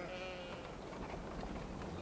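Sheep bleating: a wavering call trails off just after the start, then only faint open-air background remains.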